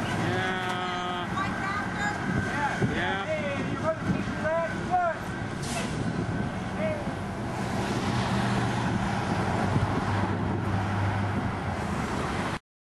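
Street traffic with vehicle engines running, a steady low engine hum showing clearly in the second half. During the first five seconds, people's voices call out over it.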